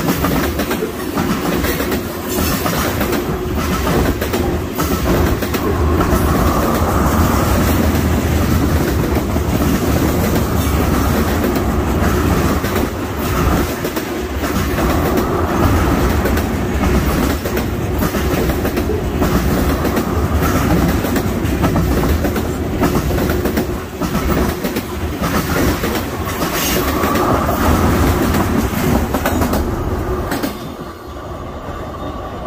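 Freight train of tank cars rolling past close by: a steady loud rumble of steel wheels on rail, with repeated clickety-clack as wheel sets cross rail joints.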